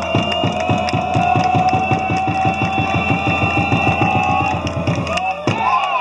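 A supporters' drum beaten in a fast, even roll of about eight strokes a second, with a long held note over it. Both stop about five seconds in, and a single thud follows.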